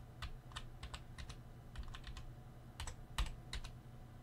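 Computer keyboard keys being pressed: quiet, irregular single clicks spaced out, a few each second.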